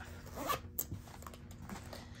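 Zipper of a fabric pencil case being pulled, with a few short rustles and clicks as the case is handled and set down.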